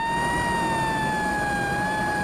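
An ambulance siren wailing: one sustained tone that rises slowly, then sinks gradually, over a low engine hum.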